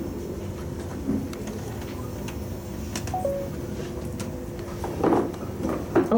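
Steady background rumble and hum of a large hall with a few faint clicks. A short electronic beep falling in two steps sounds about three seconds in, and a brief louder sound comes about five seconds in.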